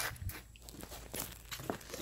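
Faint, scattered scuffs and clicks of handling noise as the camera is moved about.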